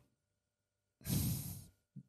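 A man's single audible sigh, a breathy exhale into a close microphone, about a second in and fading out within a second.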